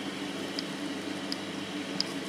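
Steady low background hum of a small workshop room, with a few faint light ticks.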